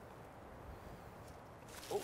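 Faint, steady outdoor background of a flowing river, with the hiss swelling slightly near the end.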